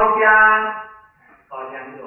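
Only speech: a man lecturing in Mandarin Chinese, with a loud, emphatic phrase lasting about a second, a short pause, and speech again from about halfway through.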